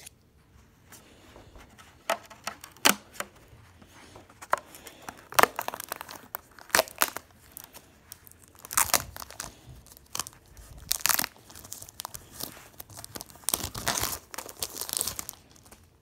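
Plastic shrink wrap being cut and torn off a plastic tank kit, crackling and crinkling in irregular bursts.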